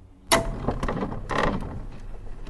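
Outro logo sound effect: a sudden hit about a third of a second in, then a string of sharp clicks over a steady low hum.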